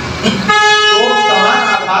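A vehicle horn sounds one long steady honk lasting about a second and a half, starting about half a second in.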